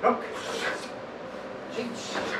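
A short, sharp voiced call at the very start, followed by a breathy rustle, then a weaker voiced sound near the end.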